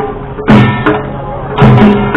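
Korean traditional folk-music accompaniment: heavy drum strokes about once a second over a steadily held melody line.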